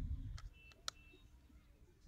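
Faint handling of a Nokia Asha 501 phone body as its battery is slid in: a few light plastic clicks, the sharpest just under a second in.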